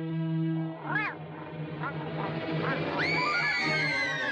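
Orchestral cartoon film score, over which the animated cat Lucifer gives a few short rising-and-falling meow-like cries, then a long high screech from about three seconds in as he tumbles.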